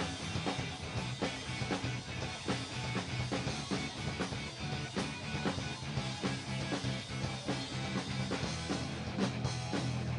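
A skate-punk rock band playing live: a fast, steady drumbeat driving electric guitars and bass.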